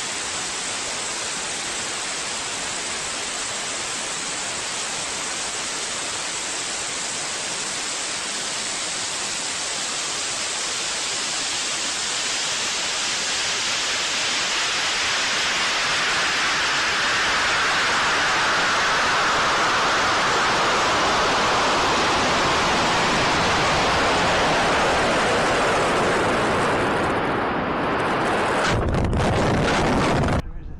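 Steady rushing noise of motor exhaust and airflow picked up by a camera riding on a large high-power rocket as it climbs. The rush grows louder and brighter through the middle. A brief low rumble comes near the end.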